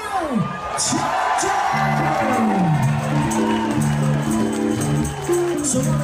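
Live rock band starting into a song: after a couple of seconds of crowd cheering and shouting, held notes from the band come in with a steady run of percussion hits.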